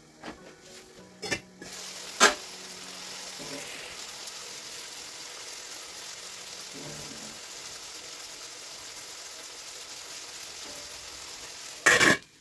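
Chicken pieces sizzling in a stainless steel frying pan, a steady hiss that comes up when the lid is lifted about a second and a half in, with a sharp metal clank just after. At the very end the metal lid goes back on the pan with a loud clatter and the sizzle is cut off.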